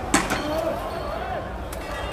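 A single sharp bang just after the start, over men shouting in the street.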